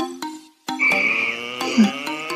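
A spoken goodnight trails off, then after a brief gap music starts: a held, slightly wavering high note over lower sustained notes.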